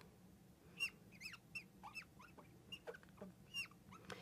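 Marker squeaking on a glass lightboard as it writes: a run of faint, short squeaks, each dropping in pitch.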